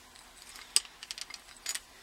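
Iron line tightener's ratchet gear and lever being worked by hand: a sharp metallic click about three quarters of a second in, then a few lighter, irregular clicks and rattles.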